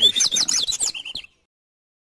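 Caged double-collared seedeater (coleiro) singing a fast run of high whistled notes that sweep up and down, cutting off suddenly a little after a second in.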